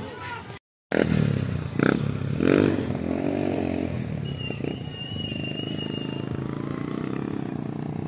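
Small motorcycle engine running steadily with an even, rapid pulsing beat. The sound cuts out completely for a moment just before a second in.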